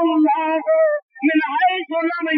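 A single voice chanting in a sung, melodic style: long held notes that waver in pitch, broken by a short pause about a second in.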